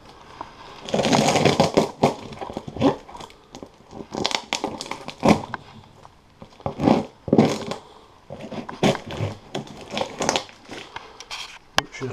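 Clear plastic wrap and packing tape on a cardboard parcel being slit and torn open, crinkling and crackling in irregular bursts with sharp scrapes and pulls.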